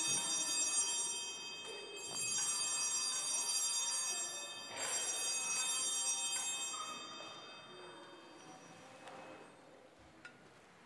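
Altar bells (Sanctus bells) rung at the elevation of the consecrated host. A ring is already sounding at the start, fresh rings come about two seconds in and about five seconds in, and the ringing fades away by about eight seconds.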